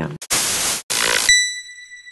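Channel ident sting: two short bursts of static hiss, then a single bell-like ping that rings on and slowly fades.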